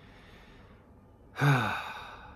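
A man's heavy sigh near the end, voiced and breathy, falling in pitch as it trails off.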